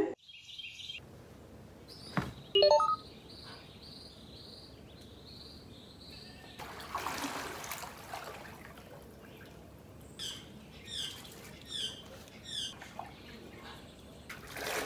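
Small birds chirping in runs of short repeated calls, with one sharp, louder sound about two and a half seconds in. About seven seconds in, a brief swell of water sloshing as a swimmer moves through the pool.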